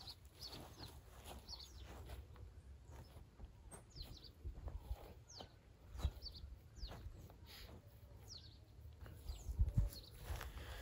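Birds chirping faintly now and then in short, quick falling notes, with a few low thumps, the loudest about six seconds in and again near the end.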